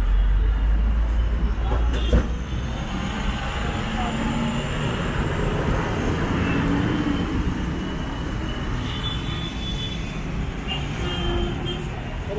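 Road traffic: vehicles running past, with a heavy engine's low rumble loudest over the first two seconds and a sharp knock about two seconds in.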